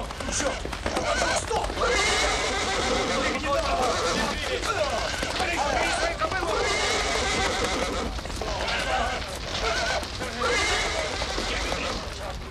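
Horses neighing in alarm at a fire close by: several long whinnies, one after another.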